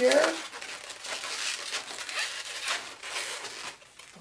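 Latex twisting balloons (a red 260 and a green pinch twist) rubbing and rustling against each other and the hands as the red balloon's nozzle is tied in and twisted secure, in a run of irregular rubbing sounds.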